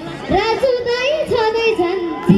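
A young girl singing a dohori line into a microphone through a stage PA. Her high voice bends and wavers between notes in short phrases, coming in again a moment after the start.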